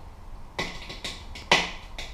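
Hand percussion: sharp clicks about every half second in a slow beat, the loudest about a second and a half in.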